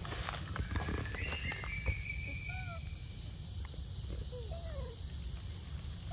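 Forest-floor animal sounds: a few short chirping calls and one longer, slightly falling high call, over a steady high drone, with light rustling and clicks of leaves and twigs.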